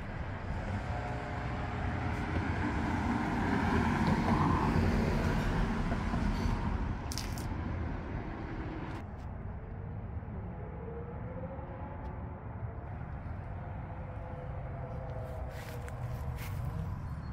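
A motor vehicle passing on a street outdoors, a low rumble that swells to its loudest about four to five seconds in and then fades to a steady low background hum.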